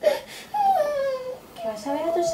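A young girl crying: a sharp sobbing catch of breath, then a long whimpering cry that falls in pitch.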